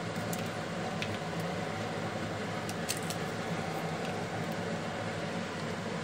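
Steady low hum with a few faint crisp crackles: fried papdi being crushed by hand and sprinkled over a paper plate of chaat.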